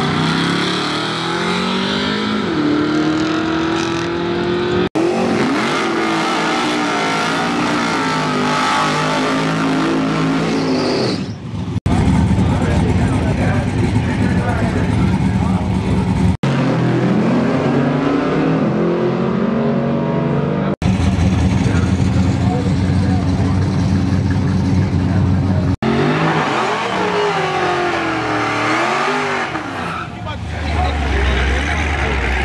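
Drag cars' engines revving and accelerating hard, in a string of short clips joined by abrupt cuts every few seconds, the engine pitch climbing and falling with each rev. The last clip is a burnout, with the engine revving against spinning tyres.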